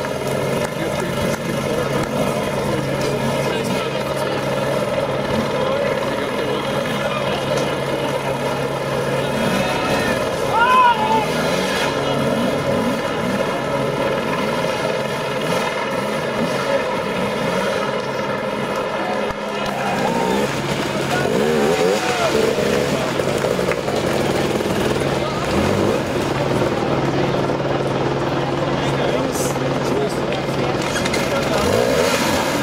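Dirt bike engine running at a steady note, under a crowd's voices and shouts. About two-thirds of the way through, the steady engine note gives way to a busier mix with more shouting.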